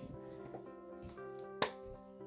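Background music with steady held synth chords, and one sharp click about one and a half seconds in.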